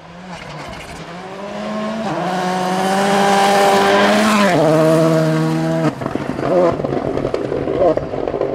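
A rally car's engine at full throttle, growing louder as it approaches, then dropping in pitch as it passes close by about four and a half seconds in. The sound cuts off abruptly near six seconds and is followed by a rougher, choppier engine sound.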